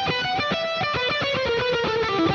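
Electric guitar with a Telecaster-style body playing a fast run of single picked notes. The pick is held choked up, index finger pointing down, which gives a clean tone with no scrapey sound.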